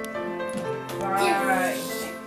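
Background music with long held notes. About a second in, a short high voice-like call rises and falls over it.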